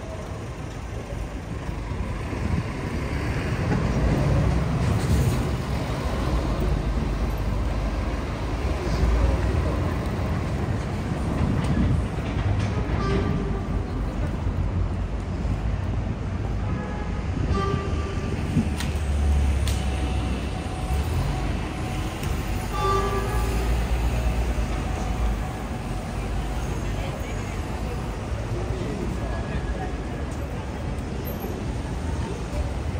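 Busy city street traffic: the low rumble of buses and other vehicles swells and fades as they pass, with passers-by talking in the background.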